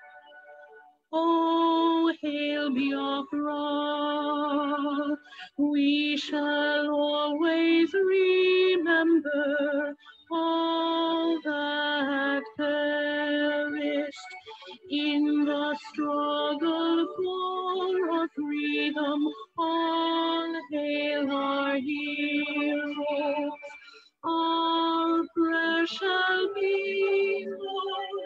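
A recording of a national anthem playing: a slow, stately melody of held notes in short phrases, starting about a second in.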